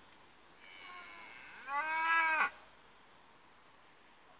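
A young head of cattle mooing once: a softer opening about half a second in, then a louder stretch that falls in pitch and stops short about two and a half seconds in.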